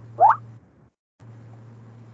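A short rising blip, like a computer notification sound, about a quarter second in, sweeping quickly upward in pitch. Under it a steady low hum runs on, cutting out briefly just before the middle.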